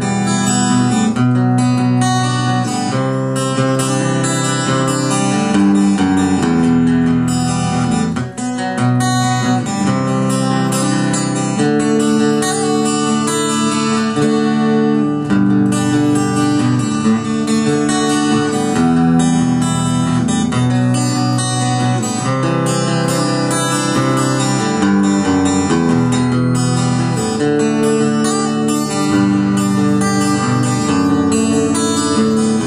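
A 1999 Parker Nitefly electric guitar played through its active piezo bridge pickup, strumming a run of chords that change every second or two. The piezo gives the electric guitar an acoustic-guitar-like tone.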